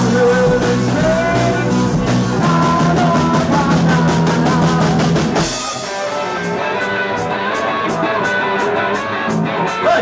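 Live rock band playing: singing over electric guitar, bass and drum kit. About halfway through the bass and the singing drop out into a sparser break, leaving guitar over a steady tick of about four beats a second.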